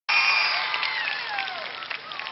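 Audience applauding and cheering, with voices calling out and gliding down in pitch. It cuts in suddenly and fades over the two seconds.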